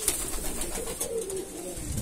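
Fantail pigeons cooing in low, wavering, repeated coos: courtship cooing from a freshly paired pair drawing to the nest.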